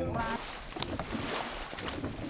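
Paddles splashing into lake water as the crew of a solu bolon, a long traditional Batak canoe, paddles at race pace. The sound is a continuous wash of churning water with a few sharper splashes.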